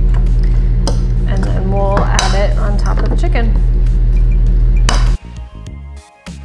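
A metal spoon stirring a wet chopped-tomato mixture in a bowl, with several sharp clinks of the spoon against the bowl, over steady background music. The stirring stops abruptly about five seconds in, where quieter music takes over.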